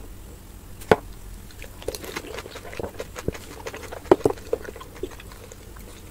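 Crisp pani puri shells and small glasses being handled as the puris are dipped and filled with flavoured water, played back at triple speed. Scattered sharp clicks and crackles, the loudest about a second in and a cluster around four seconds in.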